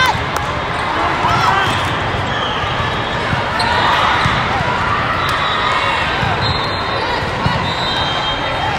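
Steady din of a large indoor volleyball hall: many overlapping voices from players and spectators, with a few short sneaker squeaks on the sport court and the thuds of a volleyball being played during a rally.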